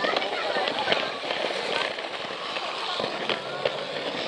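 Battery-powered Plarail toy train running on plastic track, its wheels and body giving a rapid, irregular clicking and rattling, with a crowd's chatter behind it.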